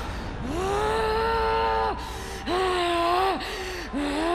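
A woman's long, loud cries, three of them, each rising into a held, steady pitch for about a second before dropping away, over a low rumble.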